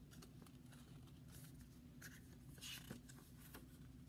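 Near silence with a low room hum, broken by a few faint, brief rustles of a small board book's pages being handled and turned.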